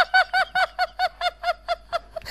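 A person's high-pitched, rapid staccato laugh, a run of short even 'hee-hee' pulses about six a second, which stops shortly before the end.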